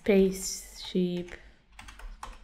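Typing on a computer keyboard, a quick run of key clicks near the end, with a voice speaking briefly twice before it.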